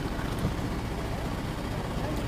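Low, steady hum of an SUV creeping forward at parking speed while its park-assist system steers, with no distinct clicks or knocks.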